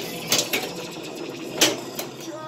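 Pinball machine in play: two sharp mechanical clacks about a second apart, the second louder, over a steady clatter.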